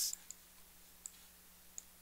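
Three short clicks of a computer mouse, about three-quarters of a second apart, over a faint steady electrical hum.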